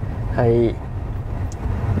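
Steady low rumble of a Hyundai Palisade heard from inside its cabin, with one short spoken word about half a second in.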